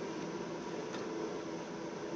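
Quiet room background: a steady low hum with a faint click about a second in.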